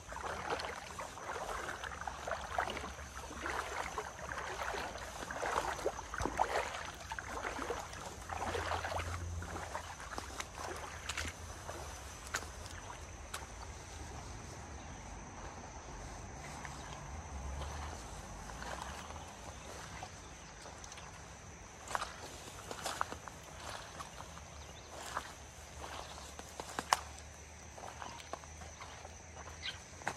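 Legs wading through shallow river water, with irregular sloshes and splashes for roughly the first ten seconds. After that it goes quieter, with a few sharp clicks and knocks in the second half.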